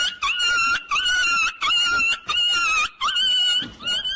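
A dog whining at a high pitch: a run of about seven short whines, each about half a second long and starting with a quick upward slide.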